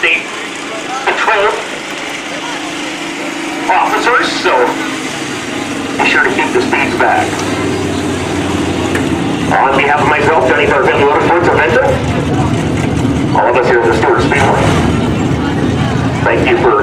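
Sport modified dirt-track race car engine idling, louder in the second half as the car comes near, under indistinct voices.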